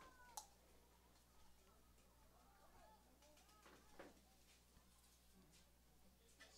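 Near silence: a faint steady low hum on the broadcast line, with a few faint brief pitched sounds in the background.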